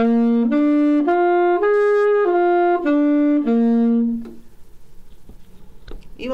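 Alto saxophone playing a G7 arpeggio (sounding as concert B♭7): seven evenly spaced notes stepping up through the chord and back down, the last low note held a little longer and stopping about four seconds in.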